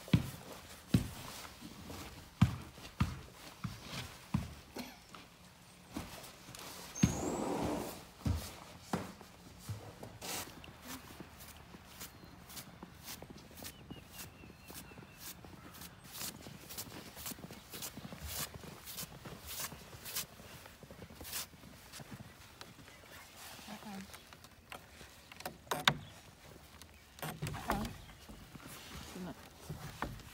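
Boots crunching through snow in a steady walking rhythm, after a run of knocks and thumps in the first few seconds. Near the end, a snow-crusted metal latch on a wooden barn door clatters as it is worked open.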